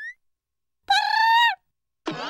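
A cartoon sound effect: the tail of a rising whistle glide as it begins, then, about a second in, a single steady high note held for about half a second.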